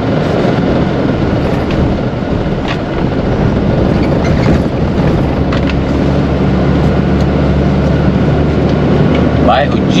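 Diesel engine and road noise of a Mercedes-Benz Atego truck heard from inside the cab while driving. The engine hum grows stronger about halfway through.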